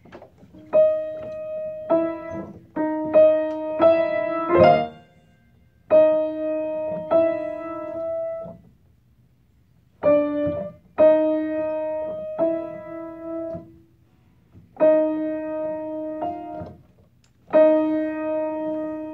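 Piano improvising in mazurka style: short phrases of chords that ring out, broken by brief pauses between them.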